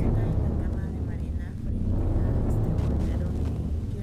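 A low, steady rumbling drone, with faint voice-like murmurs in the first second or so.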